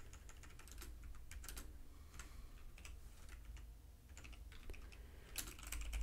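Typing on a computer keyboard: faint, irregular keystrokes.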